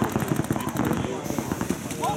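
Paintball markers firing rapid strings of shots, with players' voices shouting over them.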